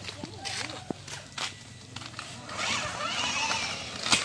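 Footsteps scuffing on a gritty paved path, a few short strokes about a second apart, with faint voices in the background.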